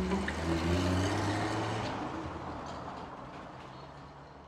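Trailer sound design: a low rumbling drone with a few held low notes over it, fading away steadily.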